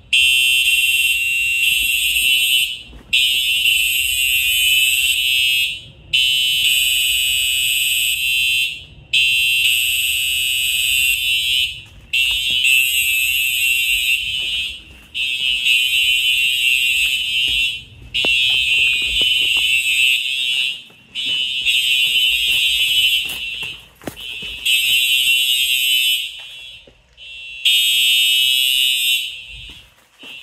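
Simplex TrueAlert fire alarm horns sounding during a system test, loud and high-pitched, in long blasts of about three seconds each broken by short gaps. Some of the signals are running a slow march time pattern that these SmartSync horns should not be able to make, which the uploader puts down to a short on the signal circuit or a bad 4009 power supply.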